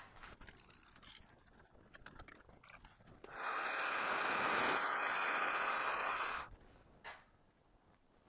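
A 25/64-inch drill bit in a metal lathe's tailstock chuck cutting a counterbore for a screw head into a spinning metal workpiece. It gives a steady cutting noise for about three seconds, starting about three seconds in after a few faint clicks and stopping sharply.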